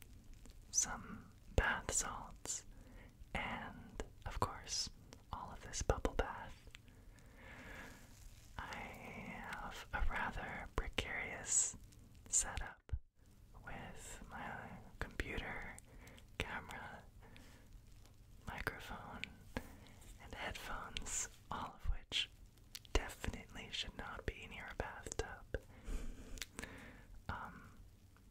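A man whispering close to the microphone in soft breathy phrases with short pauses, and a few sharp clicks between them.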